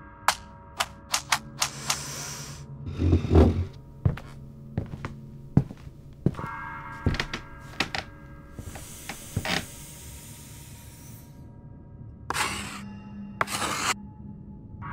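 Soft background music under a run of sharp clicks and knocks, a high hiss for a couple of seconds past the middle, then two short scratchy strokes near the end: a felt-tip marker drawing an X across a photo print.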